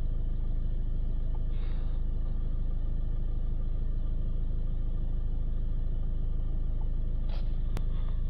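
Land Rover Discovery Sport diesel engine idling steadily, heard from inside the cabin. A light click sounds near the end.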